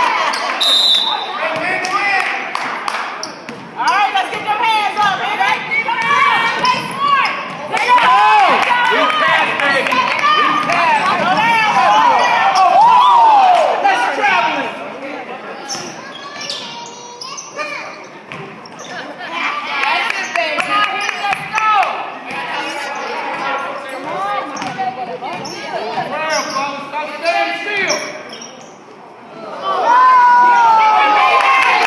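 A basketball bouncing on a hardwood gym floor during play, as a run of short knocks, under shouting voices of players and spectators throughout.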